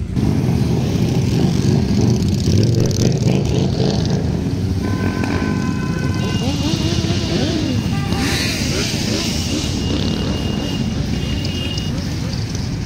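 A column of motorcycles riding slowly past one after another, their engines running in a steady rumble. Some engines rise and fall in pitch about halfway through.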